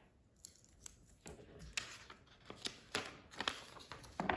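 Masking tape pulled off its roll and torn by hand: a series of short, irregular rips and crackles, with paper being handled.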